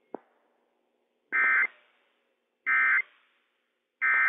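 Emergency Alert System end-of-message data bursts on NOAA Weather Radio: short buzzy digital bursts, two of them about 1.3 s apart with a third starting at the very end. They mark the close of the test message. A faint click comes just before them.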